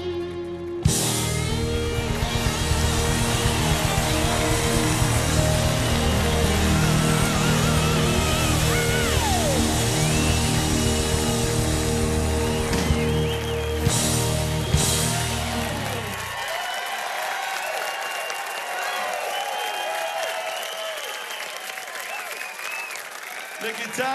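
Live rock band with electric guitar, bass and drums playing the closing bars of a song, with two loud hits near the end. About two-thirds of the way through the band stops and the crowd cheers and applauds.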